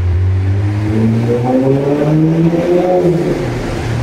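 Audi A4's turbocharged engine accelerating, heard from inside the cabin: its note climbs steadily in pitch for about three seconds, then fades back to a low steady drone near the end.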